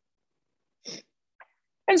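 A woman's short, quick breath in about a second in, with a faint click just after; otherwise silence.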